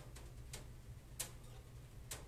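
Faint, irregularly spaced clicks, about three in two seconds with the loudest a little past a second in, over a low steady hum.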